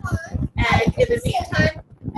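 A young child singing in a high, wavering voice.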